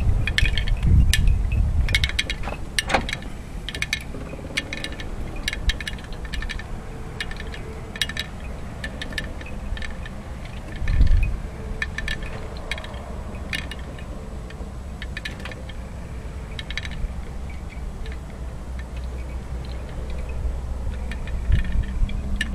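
Wind buffeting the microphone as a low rumble, heaviest in the first couple of seconds and swelling again about eleven seconds in, with scattered small clicks throughout.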